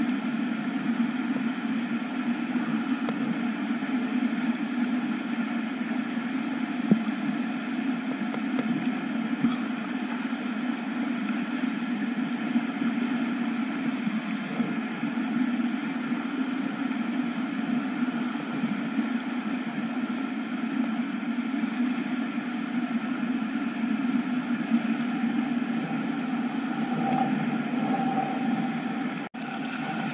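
Steady, muffled rush of river rapids around a kayak. The sound cuts out briefly near the end.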